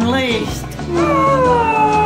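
Dog howling: one long call that starts about a second in, slides down in pitch and then holds, over background music with a steady beat. A brief voice is heard just before it.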